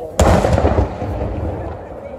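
A daytime fireworks charge goes off with one loud bang about a quarter of a second in. Its deep rumble dies away over about a second and a half.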